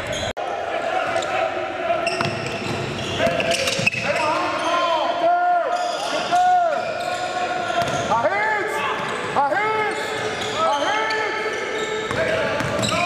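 Basketball practice on a hardwood gym floor: a basketball bouncing, sneakers squeaking in short squeals that come thickest in the second half, and shouted voices.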